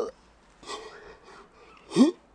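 A man's faint breath, then near the end a short, loud vocal exclamation that rises in pitch, a playful 'whoo'-like noise rather than words.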